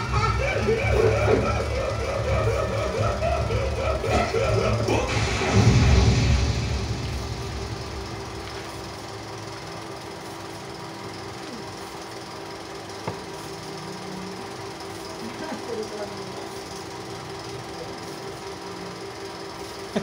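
A film's soundtrack played over the loudspeakers of an open-air screening: music and voices, loud for the first six or seven seconds, then a quieter stretch with a steady hum underneath.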